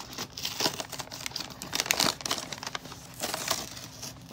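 Crinkling and rustling of plastic doll packaging being handled and opened, in several irregular bursts with the loudest about halfway through.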